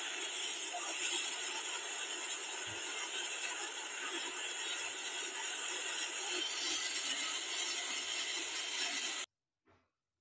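Muddy floodwater rushing out through a dam's opened outlet, a steady rush that cuts off suddenly about nine seconds in; a faint tap follows.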